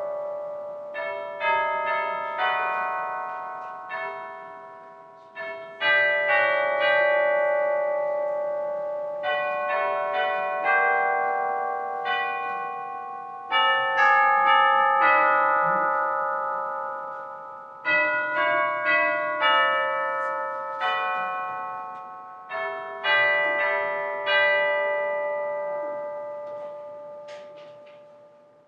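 Bell chimes playing a slow melody: each struck note rings on and fades, in groups of notes with short gaps, the last notes dying away near the end.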